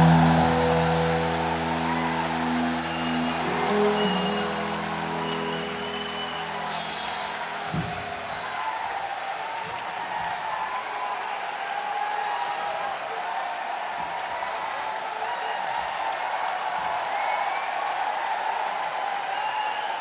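A live rock band's final chord, electric guitar included, ringing out and dying away over the first seven seconds or so, with a thump just before eight seconds in. Audience applause follows.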